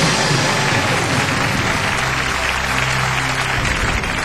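Studio audience applauding steadily, with low music underneath.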